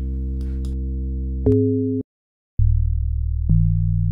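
Low, steady held synthesizer notes from Native Instruments' Blocks Base presets. A sustained tone becomes louder and higher about a second and a half in and cuts off suddenly at two seconds. After a short silence a new low held note starts and changes in pitch about three and a half seconds in.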